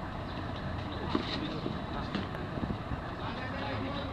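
A single sharp crack of a cricket bat striking the ball, about a second in, over a steady low outdoor rumble and faint distant voices.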